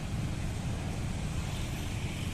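Steady low outdoor rumble with no distinct event standing out.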